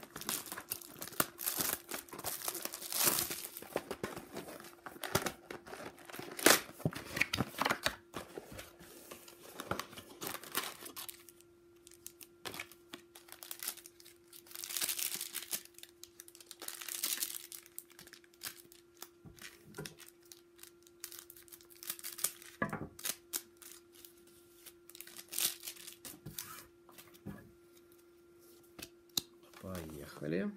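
Cellophane shrink-wrap being crinkled and torn off a hockey-card box, followed by card-pack wrappers being torn open and crinkled. The crinkling is dense for the first ten seconds or so, then comes in separate bursts, over a faint steady hum.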